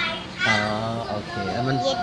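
Speech: a man and a young girl talking.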